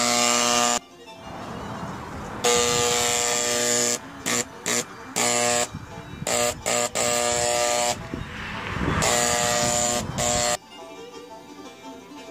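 Paint sprayer buzzing in on-off bursts of about half a second to a second and a half as its trigger is pulled and released, with quieter noise between bursts. The buzzing stops near the end and faint music follows.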